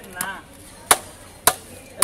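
Heavy knife striking the body of a large catla fish: two sharp knocks about half a second apart, with a fainter one just before them.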